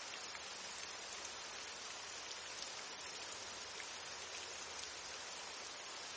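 Steady rain, a soft even hiss with faint scattered drop ticks.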